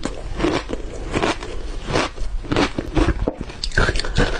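Matcha shaved ice bitten and chewed close to the microphone: crisp, irregular crunches about twice a second.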